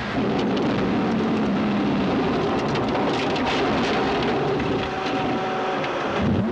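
Rally car engine running hard under load, heard from inside the cabin, under heavy tyre and road noise with rain on the windscreen.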